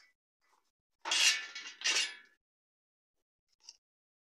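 Two metallic clinks with a short ring after each, the first about a second in and the second just under a second later, from ceiling fan parts being handled during assembly.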